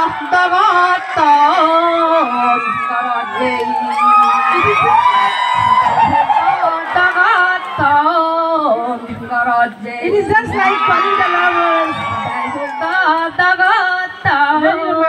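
Live singing of a Chakma ubageet, a romantic folk love song, in long held notes with a wavering, sliding melody, with crowd noise underneath.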